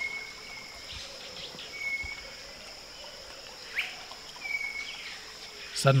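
Rufous-backed robins whistling back and forth: three thin, level whistles of half a second to a second, spaced about two seconds apart, and one quick rising note between them, over a steady high insect drone.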